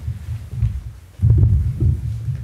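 Irregular low thumps and rumble from a handheld microphone being handled as it is moved about, growing stronger a little past a second in.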